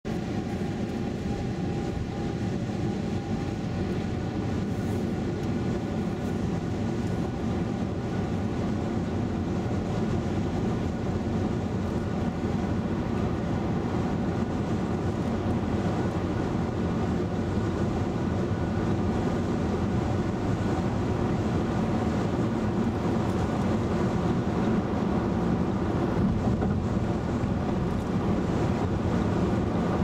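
Steady road and tyre noise with a low engine hum, heard inside the cabin of a 2011 VW Tiguan cruising at highway speed, growing slightly louder toward the end.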